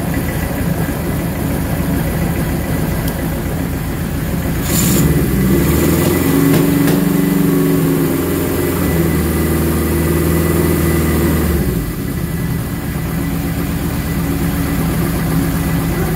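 Suzuki GS1000's air-cooled inline-four engine, not yet fully warmed up, idling, then revved about five seconds in and held at raised revs for about seven seconds before dropping back to idle. The revs are held to check that the new stator is charging.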